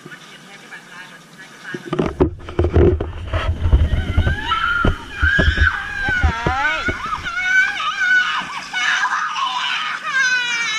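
Water splashing and sloshing around a swimmer about two seconds in. Then a young child crying and wailing in high, wavering cries, frightened of the water.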